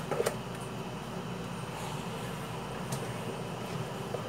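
Steady low background hum, with a few light clicks and scrapes of a spatula working cake batter out of a plastic bowl into a metal baking tin.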